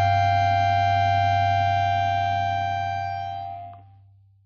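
A sustained keyboard chord with an organ-like sound, held steady and then dying away as the song ends: the higher notes stop about three and a half seconds in, and a low note fades out just after.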